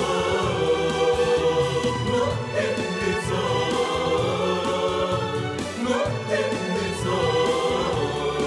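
Title-song music: a choir singing long held notes over instrumental backing.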